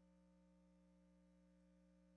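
Near silence: only a faint, steady hum made of several fixed tones, with no changes or events.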